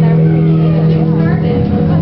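A loud, steady low machine hum, with indistinct voices of people talking in the background.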